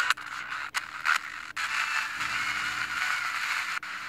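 Static hiss from a mobile phone's FM radio tuned between stations, broken by several brief silent gaps as the tuner steps from one frequency to the next.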